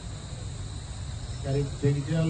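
A steady high-pitched whine with a low background rumble, heard in a pause between a man's words. His voice comes back about one and a half seconds in.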